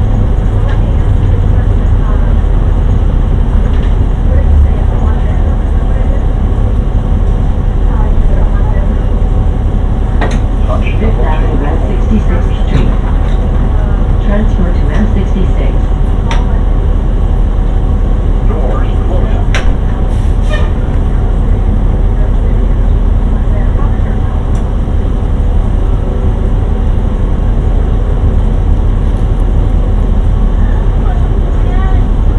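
Inside a moving city bus: the steady low rumble of the bus engine and road noise fill the cabin. Faint passenger voices and a few clicks and rattles come in around the middle.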